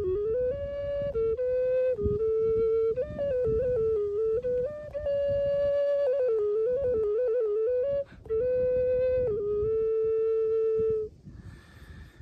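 Handmade six-hole ceramic ocarina tuned in E, playing a short melody in the mixolydian mode: clear, pure notes stepping up and down, with a few quick trills midway. There is a brief breath break about eight seconds in, and the playing stops about eleven seconds in.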